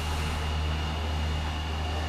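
Steady machine hum with a faint high whine, no impacts or crashes.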